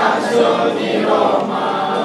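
A group of children singing together as a choir.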